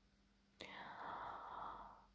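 A faint in-breath by a woman, drawn through the mouth, starting about half a second in and lasting about a second and a half.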